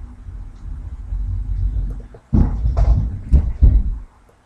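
A racket of a child's scooter rolling across the floor: a low wheel rumble, then louder bumps and knocks from a little past halfway.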